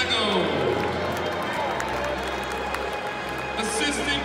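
Many voices talking at once in a large basketball arena after a game, with public-address music playing over it; a falling sweep of tones in the first second.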